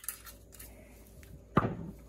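A few faint clicks, then a single loud knock about one and a half seconds in: the olive-oil bottle being set down on the kitchen counter while the potatoes are seasoned.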